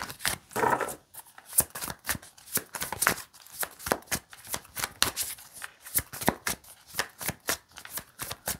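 A deck of tarot cards being shuffled by hand, overhand style: a string of quick, irregular card slaps and riffles, several a second.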